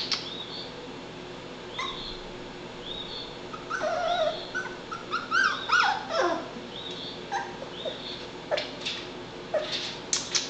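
Young Labrador Retriever puppy whining and whimpering, with a run of high, falling cries in the middle and short high squeaks between them.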